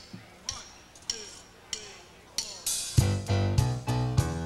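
A count-in of four sharp ticks on the drum kit, evenly spaced, then the full live band comes in together about three seconds in, with drums, bass and keyboard, starting the song.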